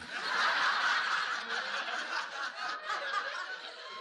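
Audience laughing. The laughter breaks out at once, is loudest in the first second and slowly dies down.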